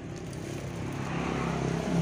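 A motor vehicle going by, its engine hum and road noise growing steadily louder.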